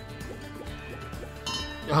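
Online slot game's background music during a free spin as the reels spin and stop, with a short bright effect sound about one and a half seconds in.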